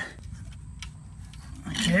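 A lull with faint low background noise and one light click near the middle, from the steel clamp tab of an add-a-leaf spring kit being worked by hand. A man's voice comes back near the end.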